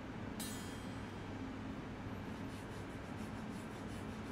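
Faint steady background hum and hiss, with no distinct sounds.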